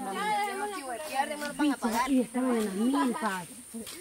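Women's voices talking among themselves, not clearly worded, over a steady faint high-pitched hiss.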